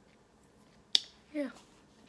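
A single sharp click about a second in, standing out against quiet room tone, followed by a short spoken "yeah".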